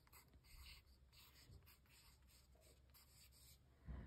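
Faint scratching of a pencil writing a word in capital letters on an art-journal page, in short strokes.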